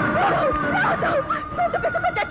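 A person laughing in quick, short, high-pitched bursts, with a steady high tone beneath.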